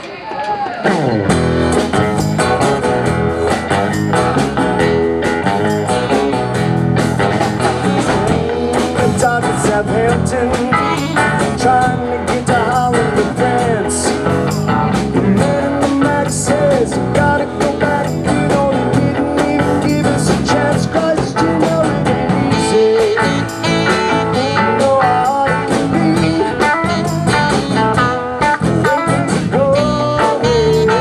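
A live band starts a song about half a second in and keeps playing: electric and bass guitars over a drum kit, with an acoustic guitar strumming.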